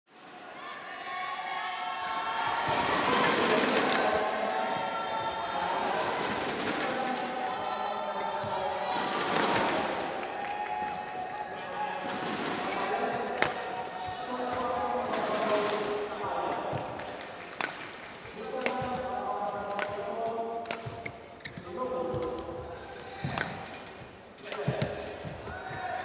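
Badminton rackets striking a shuttlecock back and forth in a fast rally, the sharp hits about a second apart and coming quicker toward the end. Court shoes squeak on the mat and a crowd is heard in the hall.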